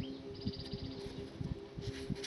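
Paper pages of a spiral-bound tube data booklet being handled and turned: small knocks, then a rustle starting near the end, over a low steady hum. A brief faint chirp of high ticks comes about a third of a second in.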